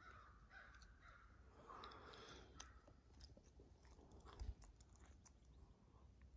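Near silence: faint forest ambience with faint, scattered bird calls, a few soft clicks and one soft low thump about four and a half seconds in.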